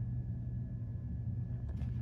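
Steady low hum, with a faint thin high tone held above it; it cuts off abruptly at the end.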